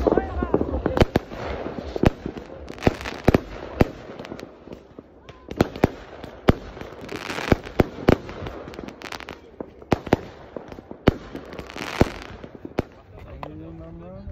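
Fireworks going off: a long run of sharp bangs from bursting rockets, some in quick succession, with short spells of crackling hiss about seven and twelve seconds in.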